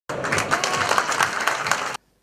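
Audience applauding, a dense patter of many hands clapping that cuts off abruptly near the end.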